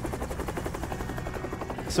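Helicopter rotor beating steadily, an even chop of about a dozen beats a second.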